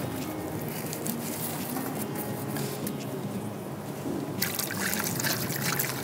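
A pot of blended bean soup (gbegiri) with palm oil, simmering on the stove with a soft, steady bubbling.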